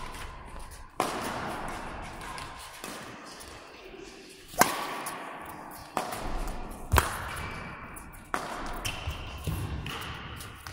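Badminton racket strings hitting a shuttlecock during a rally: five sharp hits, irregularly spaced, each ringing out in the hall's reverberation. The loudest comes near the middle.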